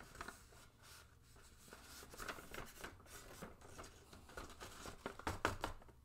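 Faint rustling of a sheet of paper being folded and pressed by hand, with a few short, crisper crackles about two, three and five seconds in.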